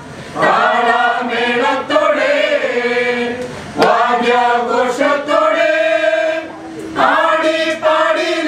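A group of women's and men's voices singing a Malayalam Christian song together in long, held phrases, with short breaks between phrases about four and seven seconds in.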